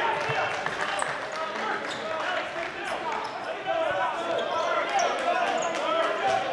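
A basketball being dribbled on a hardwood gym floor, with background voices from players and spectators echoing in the gym.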